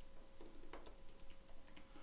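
Computer keyboard typing: a run of faint keystrokes as a word is typed out.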